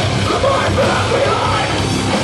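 Metal band playing live and loud, with a yelled, screamed vocal over the dense band sound.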